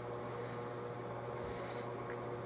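Steady electrical hum with a faint high hiss, and soft rustles of hands handling a small screw and metal fitting.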